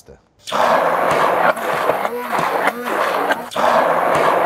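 Hand-held stick blender puréeing a thick chickpea paste in a tall jug, starting about half a second in. The motor's pitch sags and recovers over and over as the blade bogs down in the dense paste and frees itself.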